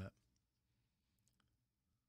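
Near silence after a man's voice stops on its last word, with a few faint clicks a little past the middle.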